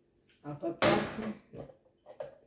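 One brief, sharp clatter of kitchenware being handled, the loudest sound here, with a short word spoken just before it.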